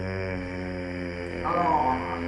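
A low, steady droning tone like a held chant. A brief higher, wavering sound rides over it about one and a half seconds in.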